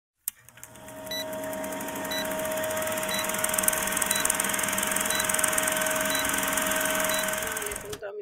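Film countdown-leader sound effect: a steady projector-like whirring clatter with a low hum, and a short high beep about once a second, seven in all. It cuts off abruptly at the end.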